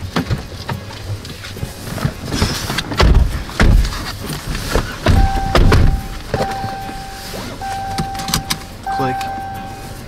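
Thumps and rustling of people settling into a car's seats, with several sharp clicks. From about halfway through, the car's warning chime sounds a steady tone in repeated spells of about a second each.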